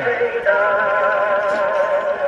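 Edison phonograph playing an early recording of a singer: a long held note with wide vibrato, thin and tinny in tone, with a short break about half a second in.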